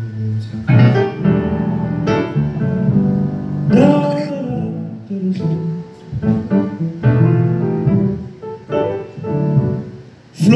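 Live music: Yamaha grand piano playing chords that change every second or so, with a voice singing and sliding in pitch about four seconds in.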